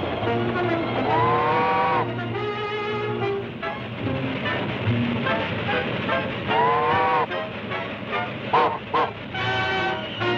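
Orchestral cartoon score with brass, mixed with the running sound of a train on the rails. Two long held tones bend up and fall away about a second in and again past the middle, and two short sharp accents come near the end.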